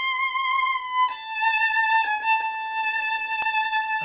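Solo violin played with a bow: three slow, long-held notes stepping down in pitch, each sung with a wide vibrato.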